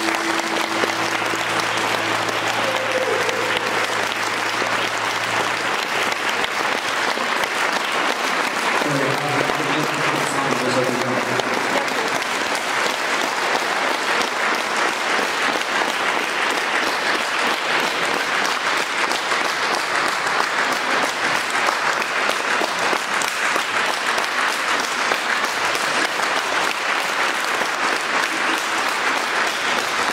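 An audience clapping steadily and at length as a song ends, with some voices heard among the clapping.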